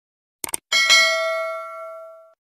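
Quick double mouse-click sound effect, then a notification-bell chime rings out with several clear pitches and slowly fades: the 'bell' sound of a subscribe animation as its bell icon is clicked.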